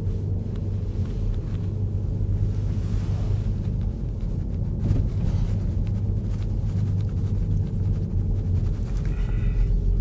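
Car engine and road rumble heard from inside the cabin while driving slowly, a steady low hum.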